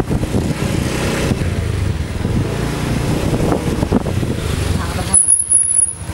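Motor scooter running as it is ridden, heard close up as a loud, even rush of engine and wind noise on the microphone. It cuts off abruptly about five seconds in.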